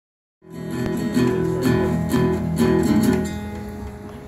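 Acoustic guitar strummed in chords, about two strokes a second, starting about half a second in and dying away near the end.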